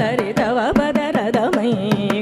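Carnatic vocal music: a woman singing a melody with heavily ornamented, continuously oscillating pitch (gamakas), accompanied by frequent sharp drum strokes.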